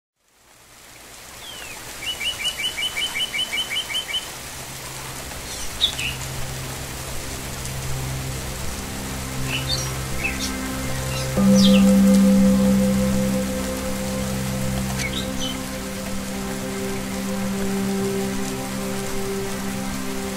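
Songbirds calling over a steady rushing hiss, with one bird giving a quick trill of about a dozen notes near the start and scattered chirps after. Beneath them, soft music of long held low notes, with a louder deep note coming in about halfway and holding.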